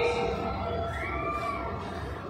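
City street ambience: a steady low hum of traffic and outdoor noise, with a faint tone that rises and falls once about a second in.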